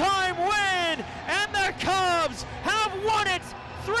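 Only speech: a hockey play-by-play commentator calling an overtime goal in an excited, raised voice.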